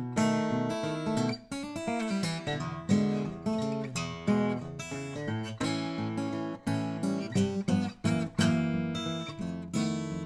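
Furch Rainbow Series OOM-CP acoustic guitar with a cedar top and padauk back and sides, played fingerstyle: a steady run of fingerpicked notes and chords over bass notes, each note ringing on.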